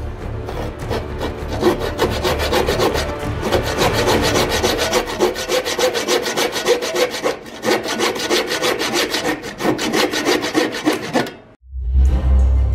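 Fine-toothed hand saw cutting through a wooden dowel, in rapid, even back-and-forth strokes that stop abruptly near the end.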